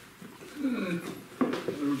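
Only speech: a man's voice resumes talking after a short pause at the start, with a drawn-out, falling vocal sound before the words.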